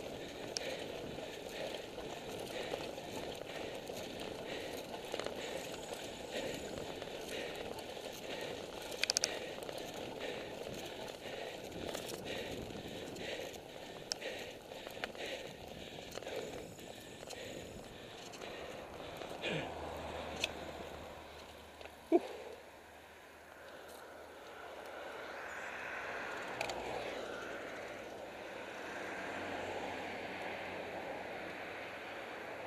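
Road bicycle rattling over cobblestones: a steady rumble full of small knocks and clicks, which gives way to a smoother rolling hiss after about 20 seconds, with one sharp click a little after that.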